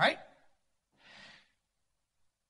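A man's short breath into the microphone, a soft half-second rush about a second in, following the last word of a spoken question.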